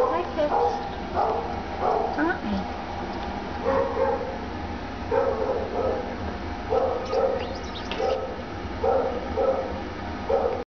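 Repeated short animal calls, mostly in pairs about once every second or so, each a brief steady-pitched note, after a few gliding calls in the first two seconds.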